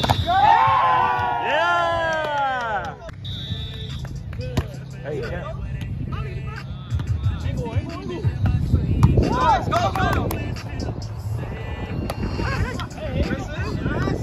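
Several players shouting and cheering during a volleyball rally on grass, with long calls that rise and fall in pitch over the first three seconds and again about nine to ten seconds in.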